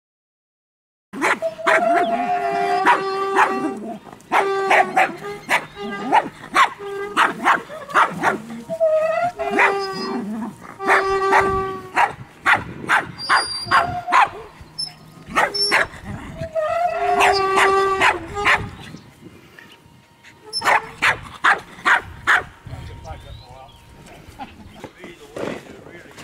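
Small dog barking and yapping in repeated bursts, starting about a second in, with a brief lull a few seconds before the end.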